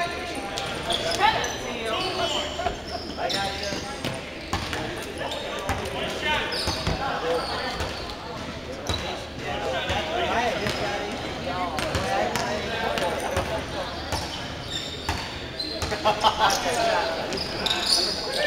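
A basketball bouncing now and then on a hardwood gym floor, over the indistinct voices of players calling out on the court.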